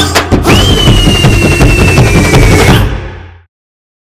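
Title jingle music with a driving drum beat and a long high tone held for about two seconds, falling slightly. The music fades and cuts off to silence about three and a half seconds in.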